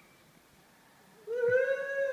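A child's long, high-pitched vocal cry while hanging from a zip line, starting about a second and a quarter in and held with a slight rise in pitch.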